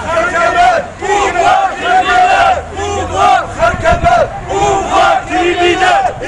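A crowd of demonstrators chanting a slogan together, loud, in a steady rhythm of about one shout a second.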